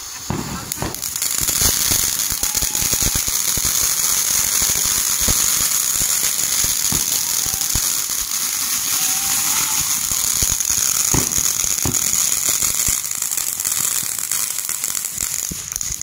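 Ground fountain firework spraying sparks: a loud, steady hiss with scattered crackling. It builds about a second in, holds, and fades near the end.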